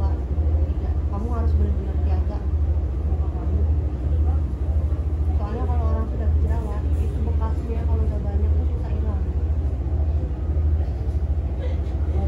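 A loud low hum that swells and fades in a regular pulse, a little faster than once a second, with indistinct voices talking in the background.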